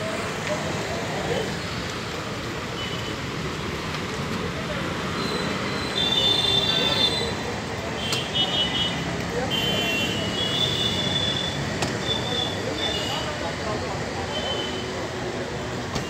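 Busy street ambience: steady traffic noise with people's voices in the background. A run of short, high-pitched tones comes through in the middle stretch.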